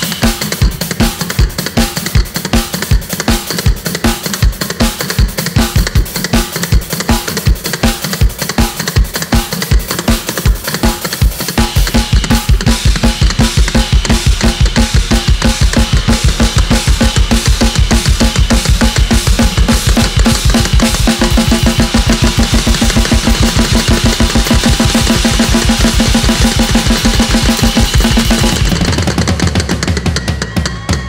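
Hurdy-gurdy and drum kit playing a fast, driving instrumental with a steady beat. About twelve seconds in, the drumming gets denser and heavier over a sustained low bottom, which drops away just before the end.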